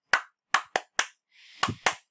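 A man clapping his hands: about six sharp, separate claps, unevenly spaced.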